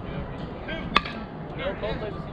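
Softball bat striking a pitched softball: one sharp ping about a second in, with a short metallic ring after it.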